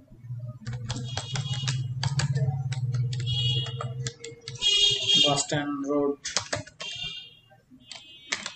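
Typing on a computer keyboard: runs of quick key clicks with short pauses between words. A low steady hum sits under the clicks for the first half, and a brief voice comes in about five seconds in.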